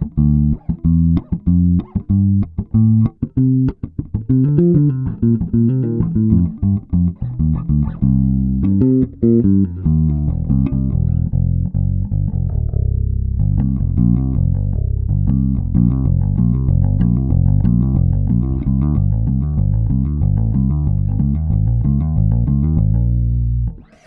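Electric bass (Kiesel LB76) played through an Aguilar AG 700 amp head with only the low mids boosted and bass, high mids and treble at zero, a low-mid-heavy clean tone. The line begins with short, detached plucked notes, and after about ten seconds turns to a more sustained, flowing run of notes that stops just before the end.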